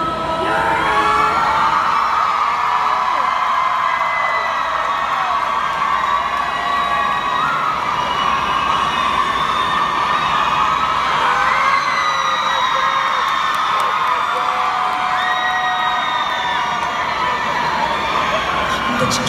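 A large concert audience screaming and cheering, many high voices held and overlapping in a loud, steady wall of sound.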